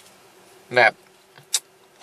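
A pause in a man's speech, with one short spoken word about a second in and a single brief click about a second and a half in, over a faint steady hum.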